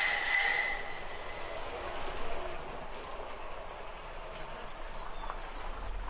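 Outdoor street ambience on a cobbled lane: a steady high whine for about the first second and a half that fades away, then a low even background with faint scattered clicks.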